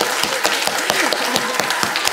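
Audience applauding, many hands clapping steadily.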